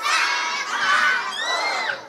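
A group of children shouting and cheering together, many voices at once, fading away just as the shout ends.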